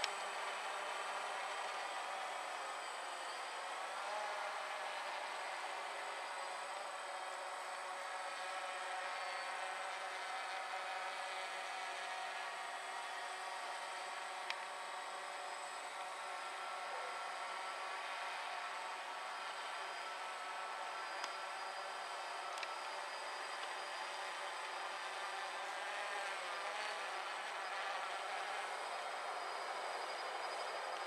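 DJI Phantom quadcopter's four electric motors and propellers whining steadily as it hovers and flies. Its pitch wavers slightly a few seconds in and again near the end as it manoeuvres.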